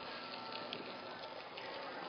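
A floured mahi mahi fillet searing in hot olive oil in a pan: a faint, steady sizzle.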